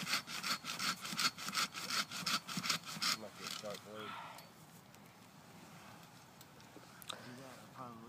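Hand saw cutting through the trunk of a pine, in rapid, even back-and-forth strokes that stop about three seconds in.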